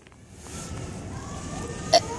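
Faint distant voices over low background murmur, with one short sharp knock near the end.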